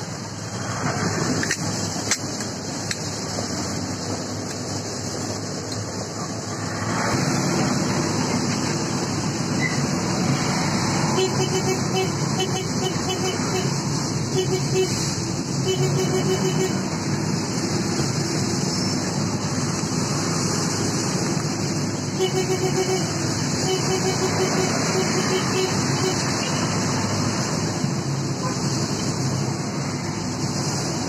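Steady vehicle and road traffic noise heard from inside a vehicle, growing louder about seven seconds in.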